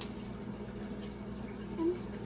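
A steady low hum fills the room, with one short click at the very start and a brief spoken word near the end.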